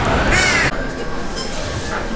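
A crow cawing once over outdoor background noise; about two-thirds of a second in, the sound cuts off suddenly to quieter indoor room tone.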